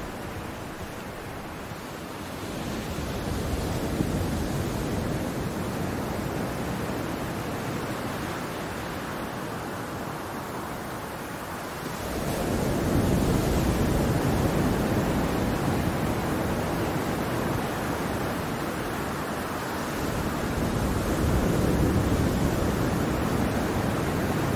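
Recorded ocean surf: a steady wash of breaking waves that swells louder three times, roughly every nine or ten seconds, with no music over it.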